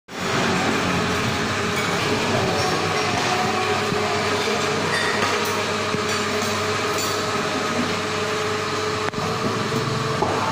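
A steady, continuous mechanical noise, a low hum with a hiss over it, that does not let up.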